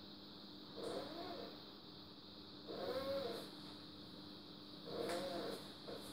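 A cat meowing faintly three times, each call rising and then falling in pitch, about two seconds apart, over a steady electrical hum.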